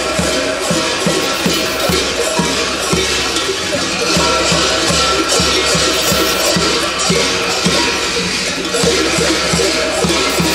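Many large metal bells hung from the belts of kukeri mummers, clanging continuously as the dancers move, over a steady low beat about twice a second.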